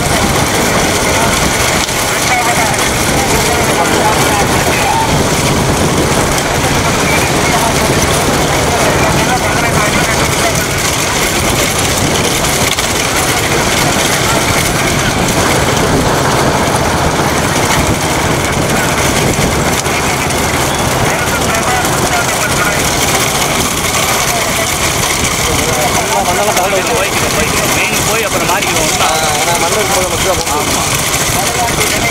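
Steady engine running and wind rush from a vehicle keeping pace with a racing bullock cart, with men's voices shouting now and then, most clearly near the end.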